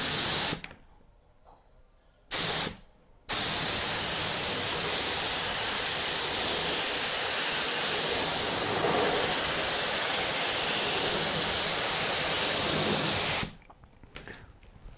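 Pressure PPIG001 HVLP gravity-feed spray gun with a 1.3 mm nozzle, spraying paint through a narrowed fan for fine detail: a brief hiss of air at the start, a second short burst about two and a half seconds in, then a steady hiss for about ten seconds that stops near the end.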